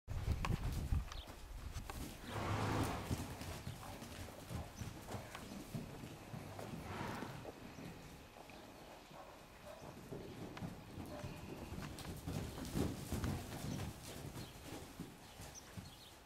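Hooves of a young foal and her mare moving on the dirt footing of an indoor arena: a scattered run of soft hoofbeats, with a louder rushing noise about two seconds in and again around seven seconds.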